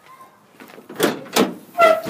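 Steel pickup tailgate of a 1987 Ford Ranger being unlatched and let down: two sharp metallic clunks about a second in, less than half a second apart.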